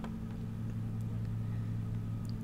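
A steady low hum with a couple of faint clicks.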